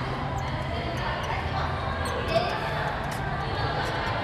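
Background chatter of other people talking in a busy room, with scattered light clicks close to the microphone and one sharper knock a little past the middle.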